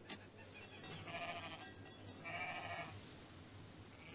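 Bleating of flock animals: two drawn-out, wavering bleats about a second apart, the second a little louder, both fairly quiet.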